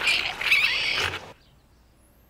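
A loud, shrill screech with scuffling for about a second, cut off abruptly.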